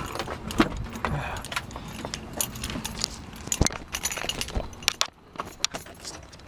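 Keys jangling with a series of sharp clicks and knocks as someone handles them while getting into a pickup truck's cab.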